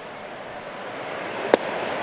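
Steady ballpark crowd noise, with one sharp pop about one and a half seconds in as a 92 mph sinker smacks into the catcher's mitt on a swing-and-miss strike three. The crowd noise then starts to swell.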